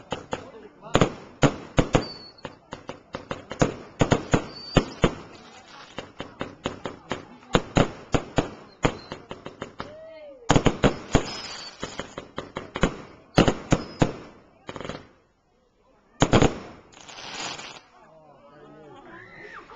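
Fireworks going off: a rapid, irregular run of sharp bangs and crackles, with a short lull about ten seconds in. Near the end it drops away for a moment, then comes a brief hissing burst.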